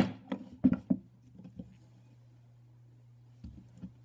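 A sharp click at the start, then a few light taps and clicks as the metal bait mold is handled and the cooled plastic tails are worked out of it, over a faint low steady hum.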